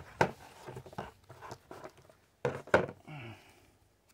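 Handling noise: a plastic solar charge controller set down on a cardboard box and a paper instruction booklet picked up and opened, a string of light knocks and paper rustles, loudest about two and a half seconds in.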